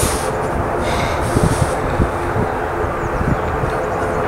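ATR turboprop's engines and propellers running as the aircraft taxis, a steady noisy hum with a low rumble.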